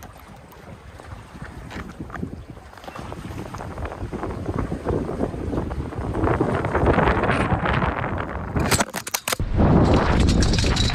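Wind buffeting the microphone over lapping sea water, growing steadily louder. Near the end come a few sharp knocks and a brief drop-out, then loud rumbling handling noise as the camera is moved.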